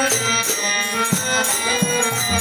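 Devotional kirtan music: a harmonium holding steady chords, small hand cymbals (kartal) striking in a regular beat about twice a second, and a few low strokes on a khol drum.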